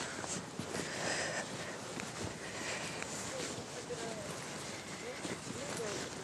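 Quiet outdoor ambience among sand dunes: faint wind and a soft hiss, with a few faint, short chirp-like glides scattered through.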